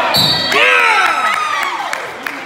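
A wrestling referee's hand slapping the mat and a short, steady whistle blast calling the fall, followed by a long cheering shout that falls in pitch.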